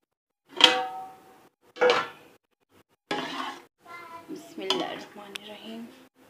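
Serving spoon clinking and scraping against a pot and plate while daal is ladled onto rice: two sharp ringing clinks about a second apart, then a longer run of clatter.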